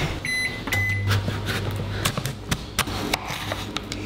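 Two short electronic beeps from a kitchen appliance's keypad, then a low steady hum from the appliance starting about a second in and lasting about a second. A run of light clicks and knocks of kitchen work follows, ending with a knife cutting on a board.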